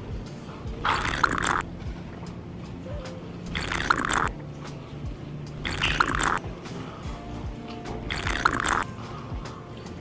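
A person gulping down a drink from a glass: four loud swallows, each about half a second long and spaced a couple of seconds apart, over soft background music.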